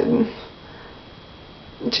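A woman's hesitant, drawn-out "y" trailing off, then a pause of faint room hiss before she starts speaking again near the end.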